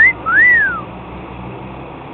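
A person whistling two notes: a short rising note, then a longer one that rises and falls. A low steady background rumble runs underneath.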